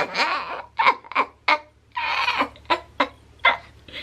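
A woman laughing in a string of short bursts with breaths between them.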